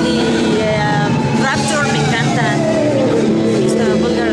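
A woman speaking Spanish over steady background music and noise, with a low tone held throughout and a slow falling glide in the second half.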